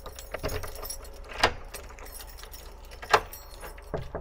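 A bunch of keys jangling on a keyring and a key worked into a front-door lock, with a series of sharp metallic clicks. The two loudest come about a second and a half in and near three seconds.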